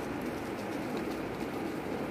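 A bird cooing twice, low-pitched, over a steady background hum.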